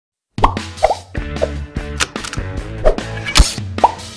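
Animated-intro music with a bass line and sharp percussive hits, starting suddenly about a third of a second in, with cartoonish plop sound effects repeating over it.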